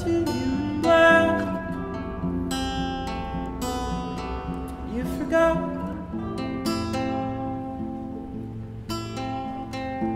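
Acoustic guitar strummed and picked, playing a song, with a singing voice at times.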